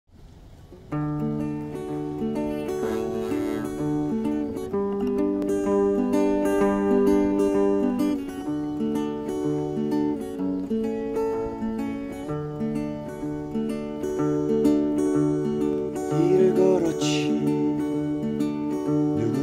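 Acoustic guitar with a capo, playing a slow picked arpeggio intro of overlapping notes that starts about a second in.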